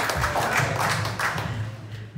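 Small audience applauding at the end of a live band's song, with a low steady hum underneath; the clapping thins out near the end.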